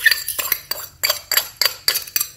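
A metal utensil tapping and scraping against a small glass bowl, about four sharp, ringing clinks a second, knocking sugar out into a mixing bowl.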